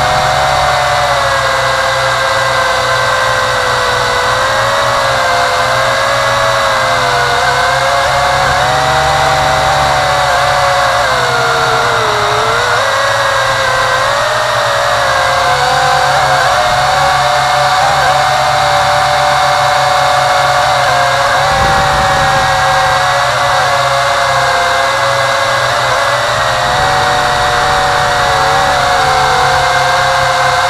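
WLtoys V262 quadcopter's electric motors and propellers whining loud and steady, heard close up from the craft itself, the pitch wavering up and down as the throttle changes.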